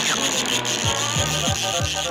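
Cartoon sound effect of a telescoping gadget arm extending: a steady mechanical whirr that starts suddenly and lasts about two seconds. It plays over background music with a repeating low bass figure.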